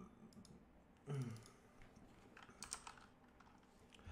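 Faint, scattered computer keyboard typing and clicks, with a short hummed 'mm' about a second in.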